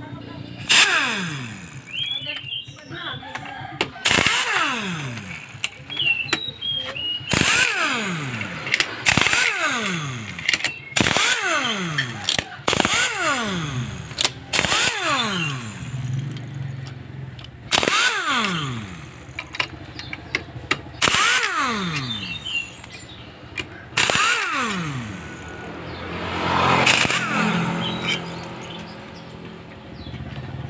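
A handheld power wrench with an 8 mm socket spinning out the bolts of a Honda Beat scooter's CVT cover. There are about ten short bursts, each starting sharply and winding down in a falling whine.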